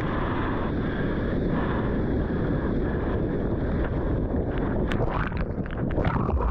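Rushing whitewater and wind buffeting the camera's microphone as a surfer rides through broken foam. Near the end a few sharp clicks and splashes as the camera goes under the water.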